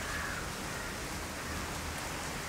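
Steady, even hiss of background noise with a faint low hum underneath; no distinct event stands out.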